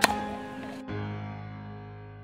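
Background music with a sharp tennis racket hit on a serve right at the start and a short hiss after it. Just under a second in, the music changes to a low held chord that slowly fades.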